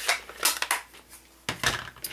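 A plastic-cased ink pad and other stamping supplies being picked up and set down on a cutting mat: a few light clicks and knocks, the loudest about one and a half seconds in.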